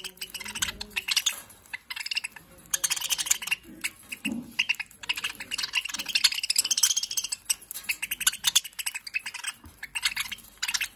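A cage of budgerigars chattering and warbling in quick, high chirps, with the small clicks of seed being cracked at the feeder.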